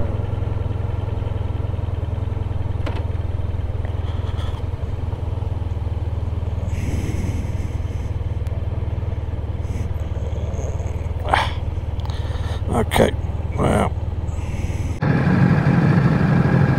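Motorcycle engine idling steadily while the bike stands at the roadside. About a second before the end the engine note rises and gets louder as it pulls away.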